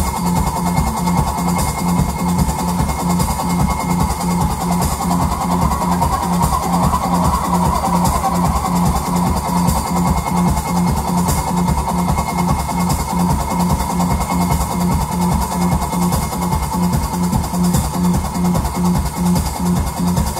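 Live band playing repetitive instrumental music: a drum kit and an electric guitar run through effects pedals hold a steady, evenly repeating low pulse. The dense sound swells around the middle and never pauses.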